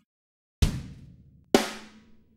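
Two single drum hits from the EZdrummer virtual drum instrument, about a second apart, each struck sharply and fading out over most of a second.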